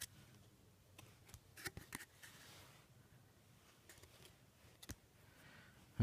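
Near silence with a few faint clicks and light rustles of trading cards being handled and flipped through.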